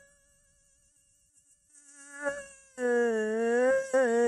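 A devotional bhajan sung by a single voice. After a brief near-silent pause the voice comes back in about two seconds in and holds one long, slightly wavering note.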